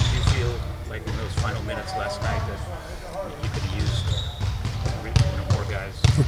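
Basketballs bouncing on a gym floor now and then, with faint, off-mic speech from another voice over it.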